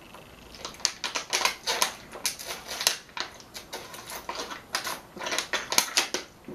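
Close-miked eating sounds: chewing with quick, irregular wet mouth clicks and crackles. Near the end a plastic water bottle crinkles as it is tipped up to drink.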